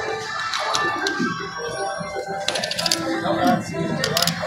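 Arcade game room sounds: electronic music and jingles from the game machines, over background voices, with a short burst of clicks about two and a half seconds in.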